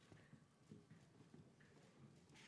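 Near silence with faint, irregular knocks of a model's footsteps walking on the runway, a few steps each second.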